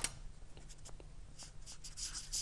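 Marker pen writing on a white board: faint, short scratching strokes as the letters are drawn, after a sharp click right at the start.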